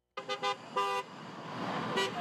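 Car horns honking: three quick toots, then a longer honk a little under a second in, followed by the steady sound of a passing car.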